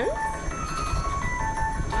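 Music: a simple electronic melody played one note at a time, stepping up and down in pitch.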